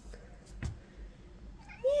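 A house cat meowing once near the end, a wavering call that begins just before the end. Before it there is only a soft knock about two-thirds of a second in.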